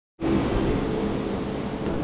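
A brief moment of silence, then a steady background hum with faint steady tones and no distinct events.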